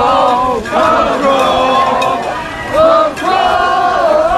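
A crowd of people singing loudly together, long held notes that rise and fall, with brief breaks for breath.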